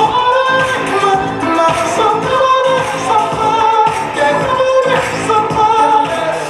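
Pop song with singing and a steady beat, played back for a dance routine.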